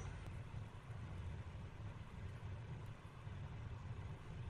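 Quiet room tone: a faint, steady low hum with a light hiss.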